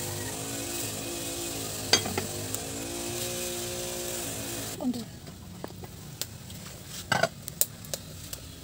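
A metal lid set onto a cooking pot with a single clank about two seconds in, over the steady hiss of a wood fire burning under the pot, with faint held musical tones in the background. Near five seconds the sound cuts to a quieter bed with a few light knocks.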